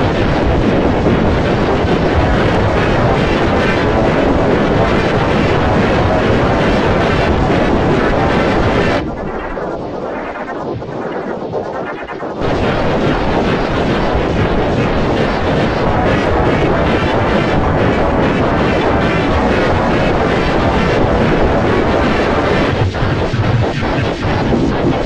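Loud, heavily distorted remix audio, a dense wall of noise with no clear tune or beat. It drops to a quieter, thinner stretch about nine seconds in, then returns at full level about three seconds later.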